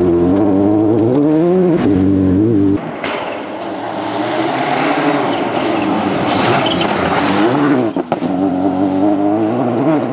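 Citroën DS3 rally car driven flat out on a gravel stage: the engine revs hard, its pitch climbing and dropping with each gear change, while the tyres throw up gravel. The sound jumps abruptly about three seconds in and again near eight seconds as it switches between passes.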